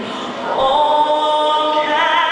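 A solo singer performing a pre-game national anthem through the arena sound system, moving to a new note about half a second in and holding it.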